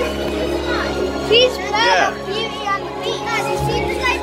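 Stage-show music playing under a crowd of children's voices shouting and squealing, several high calls that rise and fall, loudest a little before the middle.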